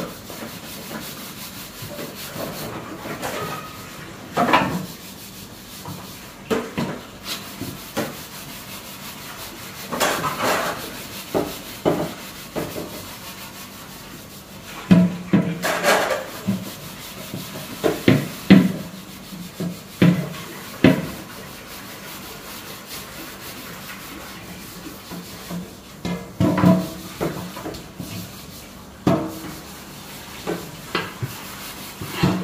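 Large metal cooking pots being scrubbed by hand: an uneven rubbing scrape broken by frequent short clanks and knocks as the pots are shifted and tipped on the floor, some with a brief low ring.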